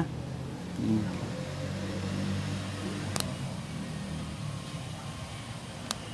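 A motor vehicle engine running steadily, a low hum that fades out about five seconds in. A sharp click a little past three seconds in, and another near the end.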